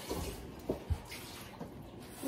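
Quiet eating sounds: a short click and a low knock about a second in, from utensils against ceramic bowls.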